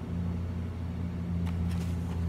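A steady low hum, with a soft click and a light paper rustle near the end as a picture-book page is handled and turned.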